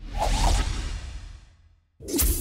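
A whoosh sound effect with a deep low boom underneath, swelling up suddenly and fading away over about a second and a half.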